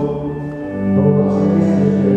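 A congregation singing a slow hymn together in long held notes. The singing eases briefly, then a new phrase starts just under a second in.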